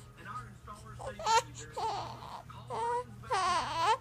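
Young infant fussing: short, separate cries that grow louder and longer, the longest one near the end.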